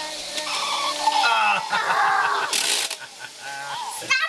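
Young children's high-pitched voices and squeals overlapping, without clear words, with a short hiss a little over two and a half seconds in.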